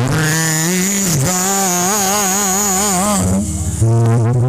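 A man singing into a microphone, holding long notes with a wide, even vibrato, two long held phrases with a short break between them.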